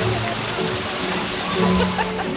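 Music playing over the steady splashing of small arching fountain jets of water.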